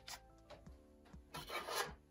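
A card rubbing against a plastic binder page sleeve as it is pushed into the pocket: a short scuff just after the start, then a louder rub of about half a second near the end.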